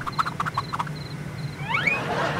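Night-ambience sound effect: a cricket chirping in short, evenly spaced pulses and a frog croaking about five times in quick succession, then a quick rising whistle-like glide near the end, over a low steady hum.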